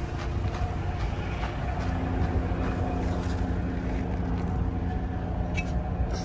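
Old water truck's engine running steadily, a low rumble with a steady hum over it.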